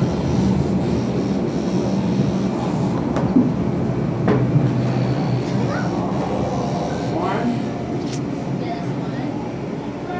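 Steady indoor background noise of a busy hall: a low continuous rumble under scattered distant voices, with a few brief knocks around the middle.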